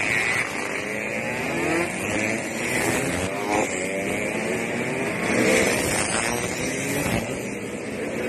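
A line of motorcycles riding past one after another, Yamaha RX-King two-strokes among them. Their engines rise and fall in pitch as each one revs and goes by.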